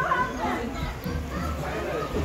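Voices of children and teenagers chattering and calling out in the background, no clear words, over a steady low rumble.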